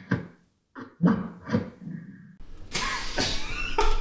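Sound effects made with a man's voice and mouth, played back as a film-trailer soundtrack: a few short, separate vocal hits and grunts, then a longer dense noisy effect in the last second or so. They are raw and unprocessed.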